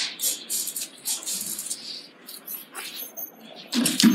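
Scattered light rustles, taps and clicks of someone moving about and handling papers and a book at a lectern.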